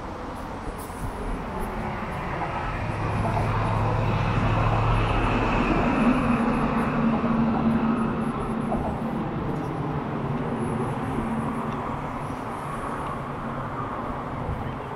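A large vehicle passing by: its noise swells over a few seconds, peaks near the middle with a low steady hum, and slowly fades away.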